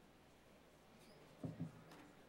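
Near silence: room tone, with two soft low thumps in quick succession about one and a half seconds in.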